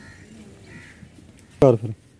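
Quiet outdoor background, then near the end a short, loud call in a man's voice, starting with a click.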